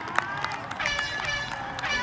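Women players shouting and cheering on an outdoor football pitch just after a goal, with a sharp knock near the start.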